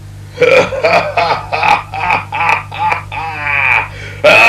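Cartoon villain's gloating laughter: a quick run of loud 'ha' bursts, with a long laugh falling in pitch near the end.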